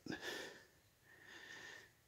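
A man's quick breath drawn in just after he stops talking, then a fainter breathy hiss about a second and a half later.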